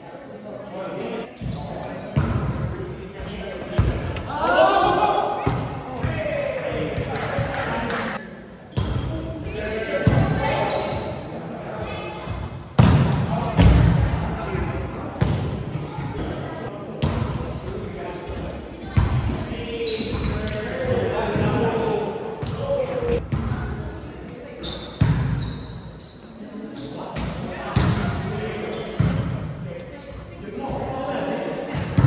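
Indoor volleyball play in a large gym: repeated sharp smacks of the ball being hit and bouncing on the gym floor, with players shouting and calling to each other.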